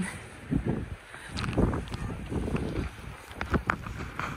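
Blizzard wind buffeting the phone's microphone in gusts that swell and fall, with a few short sharp ticks from handling the phone.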